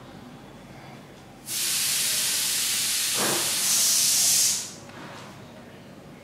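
A loud steady hiss that starts suddenly, lasts about three seconds, turns sharper near the end and then dies away.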